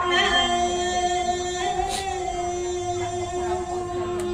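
Khmer Buddhist devotional chanting led by a woman's voice over a microphone, holding one long sustained note.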